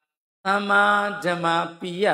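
A Buddhist monk's voice chanting paritta into a microphone. It comes in about half a second in on one long held note, then steps down to a lower pitch.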